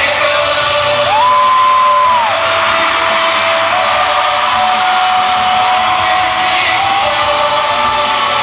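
Live pop music in an arena, recorded from the audience: the group singing over the band's backing, with fans shouting and whooping. A long held high note starts about a second in and lasts about a second.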